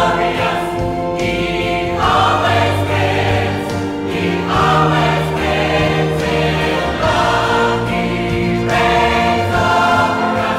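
Mixed choir of men and women singing a worship song in sustained chords, the harmony shifting every second or two.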